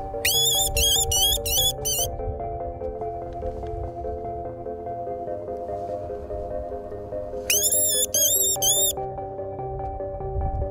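Background music throughout, over which a fox caller gives two bursts of rapid, high, rising-and-falling squeals, several in quick succession: one burst near the start and another near the end. These are the calls used to lure foxes in.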